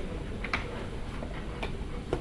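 A few faint, sharp clicks, irregularly spaced, over a steady low background hum.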